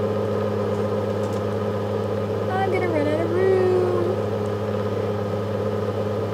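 A steady low hum made of several even tones, with a short voice sound sliding down and back up in pitch about three seconds in.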